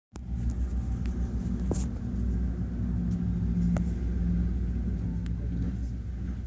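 2M62 diesel locomotive's two-stroke diesel engines running, heard through a window as a steady low rumble with an even hum. A few faint clicks sound over it.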